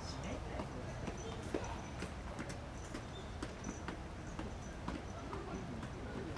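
Irregular sharp clicks and knocks over steady background noise, with faint voices.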